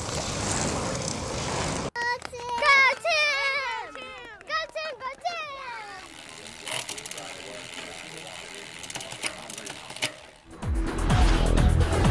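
Race-side outdoor sound: a noisy wash, then high-pitched children's voices shouting and cheering for a few seconds, then quieter ambience with scattered clicks. Electronic music with a steady low beat comes in near the end.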